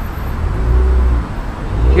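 Low rumble of street traffic passing, swelling about half a second in, easing, then rising again near the end.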